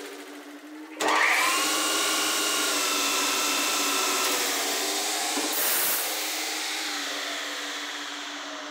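Metal lathe starting up about a second in, the spindle motor coming up to speed and then running steadily with its four-jaw chuck turning, with a brief louder hiss near six seconds and a slow fade toward the end.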